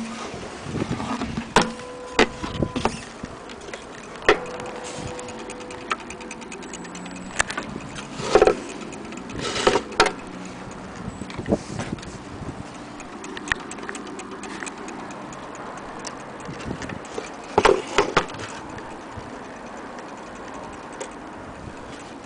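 Wooden case and movement of a vintage Elliott Westminster mantle clock being handled, with irregular clicks and several louder knocks. A faint steady ringing tone lingers for a few seconds near the start.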